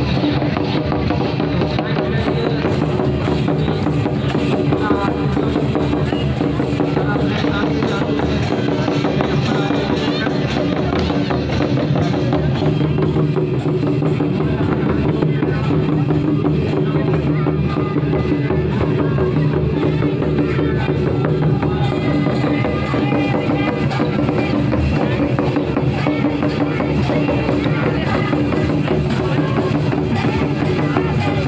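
Santali dance music played live: double-headed barrel hand drums beating a steady rhythm over the held notes of a harmonium, with voices mixed in.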